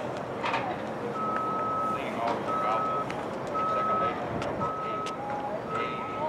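Electronic beeping: one steady tone repeating about once a second, starting about a second in, with voices in the background.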